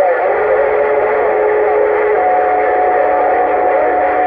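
Uniden Grant XL CB radio receiving on channel 6: a loud wash of static with steady heterodyne whistles from carriers beating on the channel. The lower whistle stops about halfway through and a higher one takes over.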